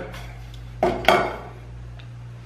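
Two quick metallic clanks about a second in, as an enamel mug knocks against a stainless-steel counter top.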